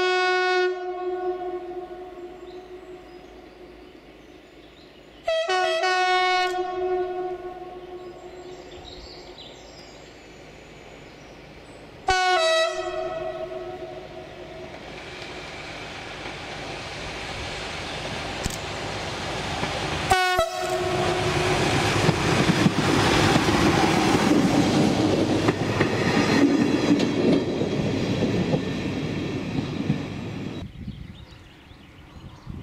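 Chord horn of X2830, an SNCF X2800-class diesel railcar: one blast ends just as the sound begins, and two more come about 5 and 12 seconds in. After that the railcar's engine and wheels on the rails build steadily as it draws near, loudest in the last third, then drop away at the end.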